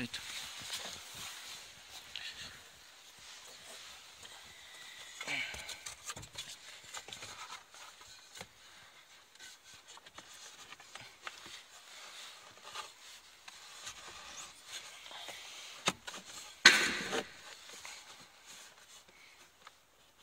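A pleated paper cabin air filter is slid and pushed into its plastic housing in an Opel Zafira's heater box, giving scattered scraping, rustling and small plastic clicks. There is one loud knock about three-quarters of the way through.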